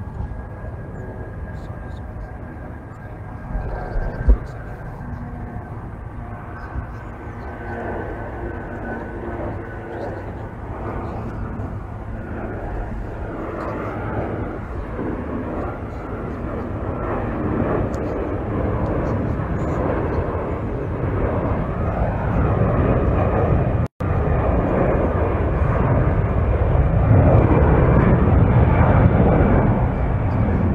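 Large helicopters' turbines and rotors growing steadily louder as the aircraft come in and settle on the grass. There is a faint steady whine early on, a short knock about four seconds in, and a momentary cut in the sound about three-quarters of the way through.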